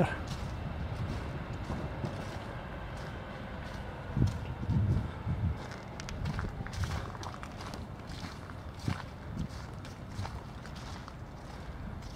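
Footsteps walking along a cemetery path covered in fallen autumn leaves. There is a cluster of soft, irregular steps about four to seven seconds in, over a faint steady outdoor background.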